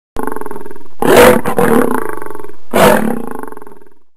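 An animal roar sound effect: a sustained pitched cry starts suddenly, swells into two loud roars about a second and a half apart, then fades out near the end.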